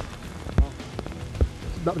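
Steady rain pattering on forest leaves and rain gear, with a few sharp knocks and low thumps scattered through it.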